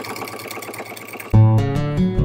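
Sewing machine stitching through quilt layers in a fast, even run of needle strokes. A little over a second in, louder acoustic guitar music comes in over it.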